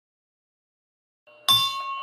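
A bell struck once about one and a half seconds in after a silent start, its clear, several-toned ring hanging on and slowly fading.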